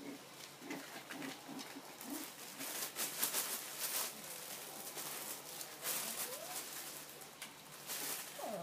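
Young Bichon Frise puppies making small grunts and squeaks, with a short rising whimper about three quarters of the way through. From about two seconds in, quick scuffling and crinkling of paws scrambling over a puppy pad joins them.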